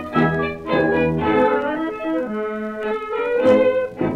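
Dance orchestra playing the instrumental introduction of a tango on a 1933 Pathé 78 rpm record, in short rhythmic phrases that give way to a held note.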